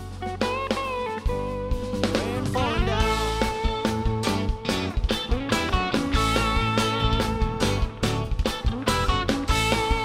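Live rock band playing an instrumental passage: electric guitar lead lines with bends and vibrato over bass guitar and drum kit, the drums settling into a steady beat about three seconds in.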